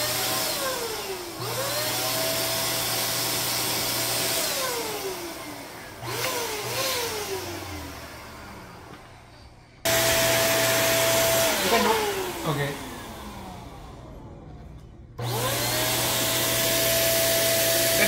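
Handheld electric balloon pump blowing air into an inflatable, switched on and off several times: each time its motor whines up to a steady pitch, runs for a few seconds, then winds down. It cuts in abruptly about ten seconds in and again about fifteen seconds in.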